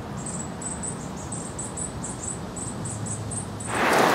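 A quick, slightly irregular series of short, high-pitched chirps, about four a second, over a low steady background rumble. A louder rush of noise comes in near the end.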